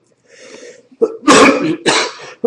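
A man coughing: a soft throat sound, then a loud, rough cough about a second in that runs straight into another.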